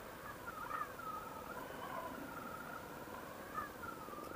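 Faint, wavering whine with a brief upward bend about a second in and another near the end. It is the low background of a motorcycle ride at crawling speed, as heard through a helmet intercom microphone.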